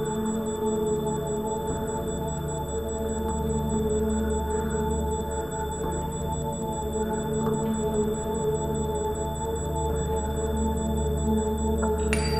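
Live ambient electronic drone music: layered sustained tones held steady, with a fast, even high ticking pulse over them.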